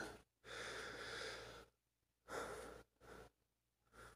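A man breathing audibly and close up: one long breath of about a second, then two shorter, fainter breaths.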